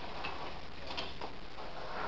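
A few faint light clicks and taps, scattered rather than regular, over a steady low room hum, as items are put away during classroom clean-up.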